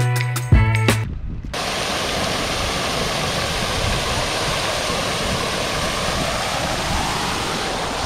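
Background music with a beat cuts off about a second in. It gives way to the steady rushing splash of a fountain: a tall central jet and arcing side jets falling into its basin.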